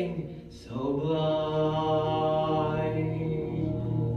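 A sung note fades out in the first half second; then the instrumental backing track holds a long, steady chord at the close of the song.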